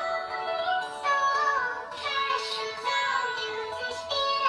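A song playing: a singing voice carried over steady instrumental backing.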